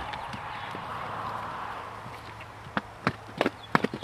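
Young saddled horse's hooves striking dirt and rock as it climbs over a mound: a soft steady hiss at first, then about seven sharp hoofbeats in the second half, irregularly spaced.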